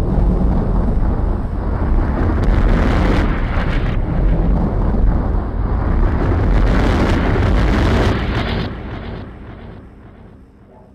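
Electronic music: a dense, noisy sound-design wash with a heavy bass end and no clear melody, fading out steadily from about eight and a half seconds in.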